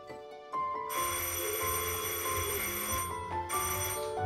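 Electric buzzer set off by an octopus pulling a string rigged to her tank, ringing for about two seconds starting about a second in, over background music.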